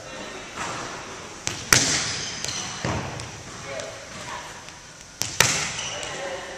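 Volleyball being struck in a gymnasium: sharp hand slaps and forearm-pass thumps on the ball, each ringing off the hall walls, with two loud hits a little under two seconds in and near the end and a few lighter contacts between.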